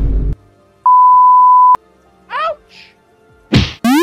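A run of cartoon sound effects. It opens with a short puff at the very start, then comes a loud steady electronic beep lasting about a second, then a brief swooping blip. Near the end there is a sharp whoosh followed by a quick rising whistle-like zip.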